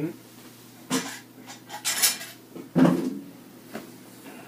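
A few separate clatters and knocks of hard objects being handled, the loudest about three seconds in.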